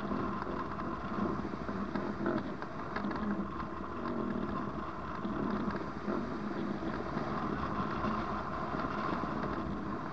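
Steady rushing wind noise from airflow over the microphone of a camera mounted on a hang glider in flight.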